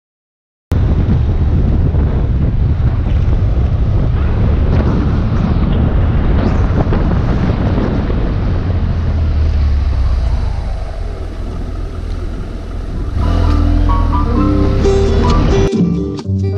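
Riding noise of a BMW F700GS motorcycle on the move: heavy wind rumble on the camera microphone over the engine running steadily, cutting in suddenly less than a second in. Near the end, plucked guitar music comes in over it.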